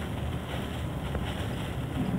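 Wind on the microphone: a steady, low rushing noise.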